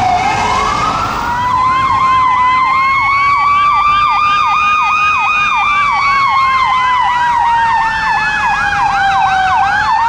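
Electronic emergency sirens. The first second is a fire rescue truck's siren in a slow wail, falling then rising again. From just over a second in, two sirens sound together: one in a slow wail that drifts up and down, and one in a fast yelp of about two to three sweeps a second.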